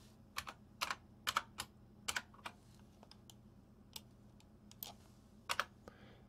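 Scattered keystrokes on a computer keyboard as a spreadsheet formula is typed in. There are a handful of quick taps in the first two and a half seconds, a few faint ones in the middle, and two or three more near the end.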